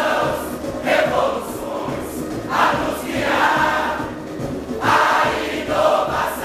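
Large mixed samba-school chorus singing a samba-enredo in loud phrases, over a steady low beat.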